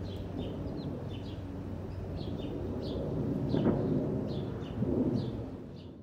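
A small bird chirping outdoors, short high chirps repeating about twice a second, over a low rumbling background noise that swells louder twice, about three and a half and five seconds in.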